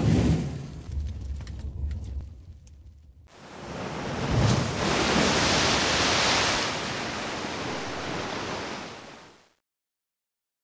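Title-reveal sound effects: a deep rumble dies away over the first three seconds. Then a rushing noise like surf or wind starts suddenly, swells to its loudest around the middle and fades out just before the end.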